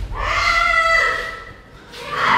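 A single high-pitched vocal cry, held for about a second and then trailing off.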